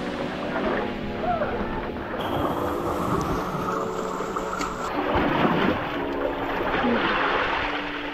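Seawater sloshing and surging against coral limestone rocks and into a rock crevice, with a faint music bed underneath.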